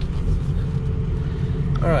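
Ford 6.0 Power Stroke V8 turbo diesel running at idle, a steady low rumble heard from inside the truck's cab.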